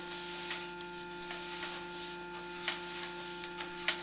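Steady electrical hum of several even tones with a faint hiss, from a sewer inspection camera setup, with a few faint ticks scattered through it.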